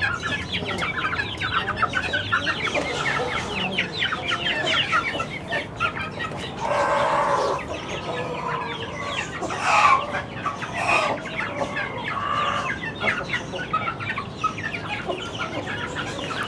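A flock of half-grown Aseel chicks clucking and peeping in many rapid, overlapping short calls, with one longer, louder call about seven seconds in.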